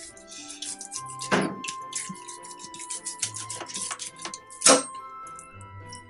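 Background music with sustained notes, over irregular clicks and scrapes of a fillet knife cutting along a sucker's backbone and ribs, with one sharper click a little past the middle.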